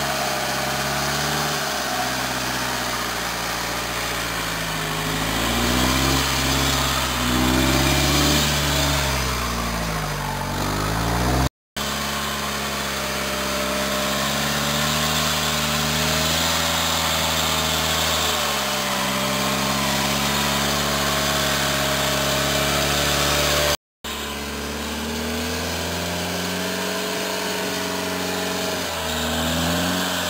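A vehicle winch hauling a four-wheel drive up a steep bank under load, with the vehicle's engine running. The motor's whine wavers slowly in pitch as the load changes, and it drops out briefly twice.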